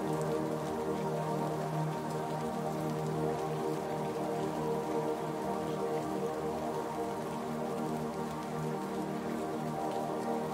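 Slow meditation music of long held, layered tones, mixed over a steady sound of falling rain.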